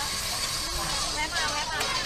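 Mostly a woman's speech, over a steady hiss of background noise.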